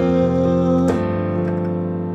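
Electronic keyboard with a piano sound playing sustained chords. The first is an F suspended-fourth chord, struck at the start, and a new chord follows about a second in.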